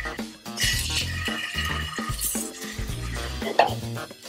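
Background music with steady low notes, over the sizzle of a mahi-mahi fillet searing in hot olive oil in a carbon steel pan. A single sharp click comes near the end.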